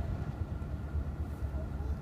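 Steady low rumble inside a parked Tesla Model S cabin with the air-conditioning blower running.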